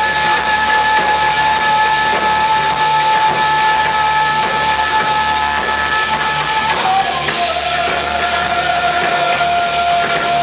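A live rock band playing, with electric guitar, bass, drum kit and a singer. A long held high note steps down to a lower held note about seven seconds in.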